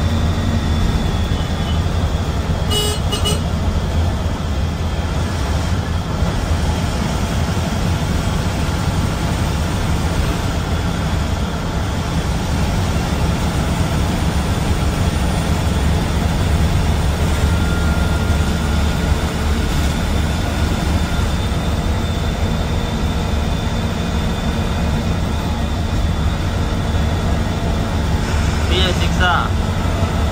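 Steady low drone of a bus engine and road noise, heard from inside the cab of an AC sleeper coach cruising on a highway. There is a short horn toot about three seconds in.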